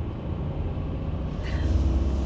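Car engine and road noise heard from inside the cabin: a steady low rumble that grows louder about one and a half seconds in as the car gets moving.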